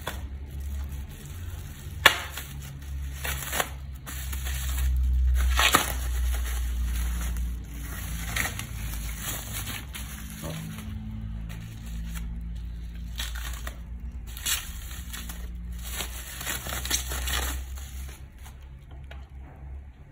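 Plastic packaging wrap crinkling and tearing as it is pulled off a bicycle's handlebar, in irregular rustles and crackles, with one sharp snap about two seconds in.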